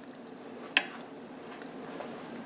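A metal fork set down on a ceramic dinner plate: one sharp click about three-quarters of a second in, with a smaller tick just after, over a faint steady room hum.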